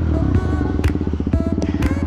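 KTM Duke 200's single-cylinder engine running at low revs as the bike rolls slowly, a fast, even pulsing with a steady low rumble beneath. Music plays underneath.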